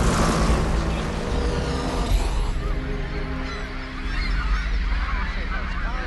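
A large flock of birds calling overhead, many short honking calls overlapping, entering about two and a half seconds in over sustained music. Before that a dense rushing noise fills the opening seconds.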